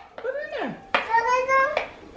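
Speech only: a young child's high voice, a short call falling in pitch, then a longer held call about a second in.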